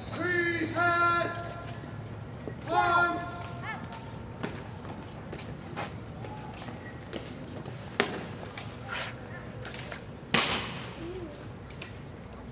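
Drill commands shouted in long, held calls in the first three seconds, then sharp slaps and clacks of hands on rifles as the drill team brings its rifles up, the loudest about ten seconds in.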